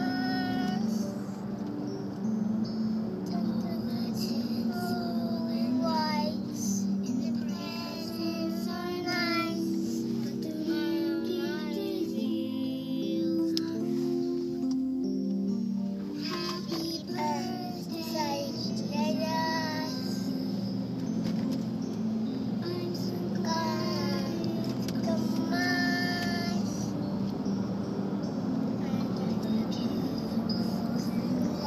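A toddler girl singing a song in a high voice, phrase by phrase with short pauses, over steady background music.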